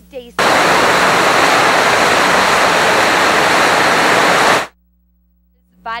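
Loud, even static hiss that starts abruptly about half a second in and cuts off sharply after about four seconds, then a second of dead silence: an audio signal fault that blots out the speech.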